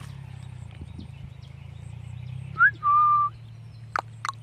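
A short whistle: a quick rising note, then one steady high note held for about half a second, over a low steady hum.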